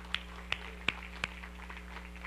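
Hand claps: about four sharp claps roughly three a second, stopping after about a second and a quarter, then a few fainter scattered claps, over a steady low electrical hum.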